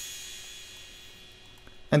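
Crash cymbal sample ringing out and fading slowly after a single hit, a high metallic wash that dies away over about two seconds.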